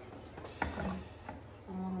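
A single light knock about half a second in, then a short hummed "hmm" from a person near the end.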